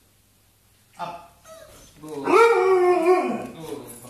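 Husky-type dog vocalizing: a short whine about a second in, then a louder drawn-out howling 'woo' about a second long that rises, holds and falls away.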